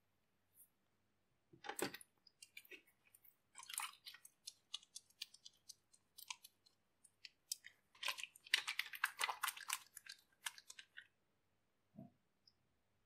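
Wet hands kneading and rubbing a lump of homemade shampoo-and-cornstarch soap dough into a lather, making soft squelchy, crackly wet clicks in irregular bursts that are thickest about two-thirds of the way in.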